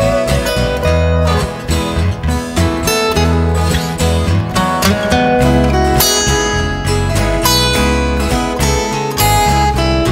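Acoustic guitar playing an instrumental passage, plucked and strummed notes with no singing.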